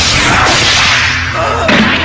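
Loud rushing whoosh of a cartoon sound effect, a dense hiss over a low steady hum, with a short break in the hiss about half a second in.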